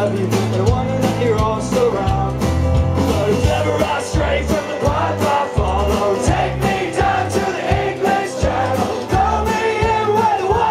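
Live band playing an up-tempo folk-rock song: a man singing lead over strummed acoustic guitar, bass, keyboard and a steady drum beat.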